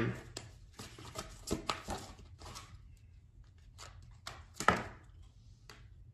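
Scattered light clicks and taps of small objects being handled, about ten of them at uneven intervals, with one sharper click about three-quarters of the way through.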